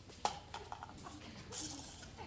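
A broom working a hard stage floor: one sharp knock about a quarter second in, a few lighter taps after it, then a short swish near the end.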